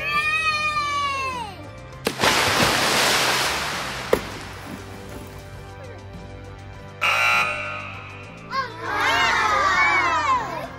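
A football helmet is dropped into pool water and lands with a splash about two seconds in; the splash noise dies away over the next two seconds. Background music plays underneath.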